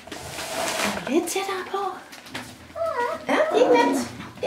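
Young puppies whining and yelping in short, high, bending calls, mixed with a woman's high-pitched wordless voice; rustling in the first second.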